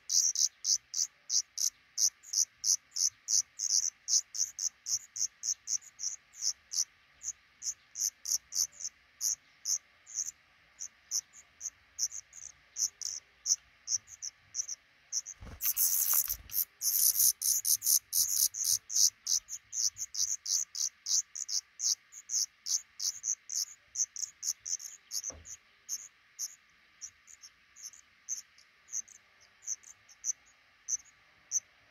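Black redstart nestlings giving rapid, thin, high-pitched begging calls, a few a second. The calls swell into a dense, louder burst about sixteen seconds in as a parent arrives to feed them, then thin out toward the end.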